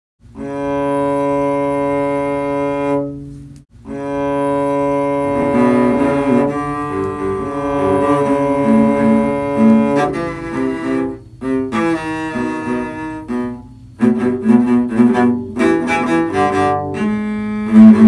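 Cellos playing a remix of a hockey goal horn: a long held note, a brief break, then a second held note with more layers joining, turning into short, quick bowed notes near the end.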